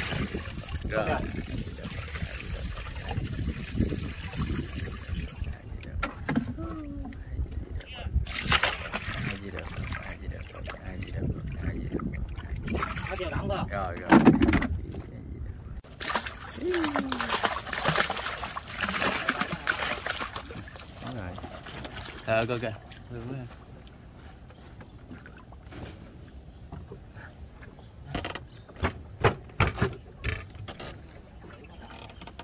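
River water splashing and sloshing as live fish are tipped from a plastic basin and then poured from a sack over a boat's side, the fish thrashing at the surface as they go in. Voices come and go throughout.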